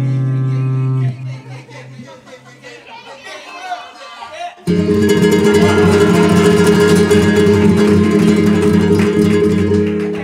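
A Spanish guitar and jazz guitar duo: a chord rings and dies away about a second in, followed by a quieter pause with faint voices. About five seconds in, a loud chord is struck and kept going with rapid strums to the end.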